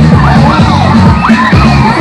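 Loud dance music with a heavy bass beat over a sound system, with a crowd of children shouting and cheering over it.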